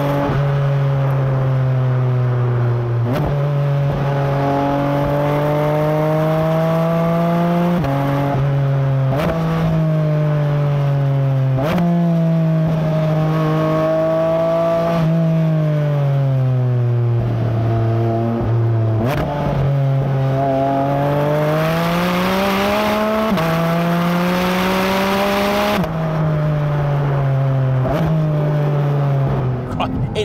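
Porsche 718 Cayman GT4 RS's naturally aspirated 4.0-litre flat-six under hard driving, heard from outside the car: the engine note climbs and falls with the revs, broken by about ten quick gear changes, some stepping the pitch down and some up.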